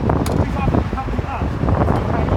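Wind buffeting the microphone over the rumble of passing road traffic, with scraps of people's voices talking.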